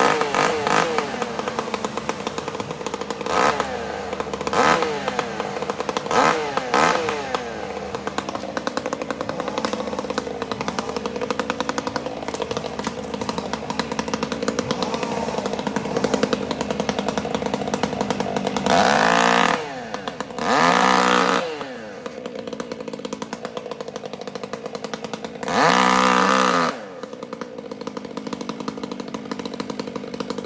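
Gas chainsaw idling, blipped to high revs several times in the first seven seconds, then opened up in three longer full-throttle bursts near the end, its pitch rising and falling.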